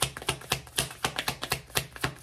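A tarot deck being shuffled by hand: a quick, uneven run of sharp card-on-card clicks, about eight a second.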